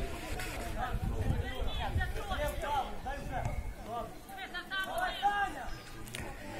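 People talking, several voices at once, at a moderate level, with no distinct non-speech sound standing out.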